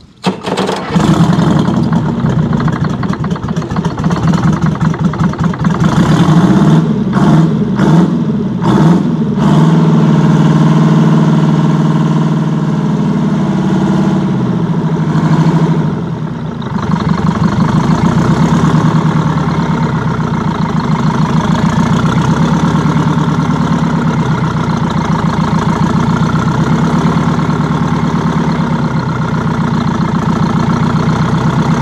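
A freshly rebuilt Detroit Diesel 4-71, a two-stroke inline four-cylinder diesel, fires and starts running on its first start about half a second in. It is revved up and down for several seconds, then settles to a steady idle.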